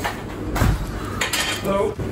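Pots, pans and cutlery clinking and knocking as someone works at a kitchen stove and counter, with a few sharp clicks and a dull thud.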